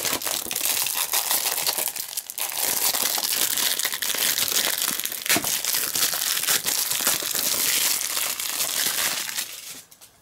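Clear plastic shrink-wrap being torn and peeled off a Blu-ray case: continuous crinkling, with a short lull about two seconds in, that stops just before the end.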